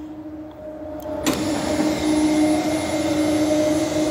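Electric motor of a Norwood portable sawmill's add-on power drive running with a steady whine. About a second in there is a click and it grows louder and fuller, then holds steady.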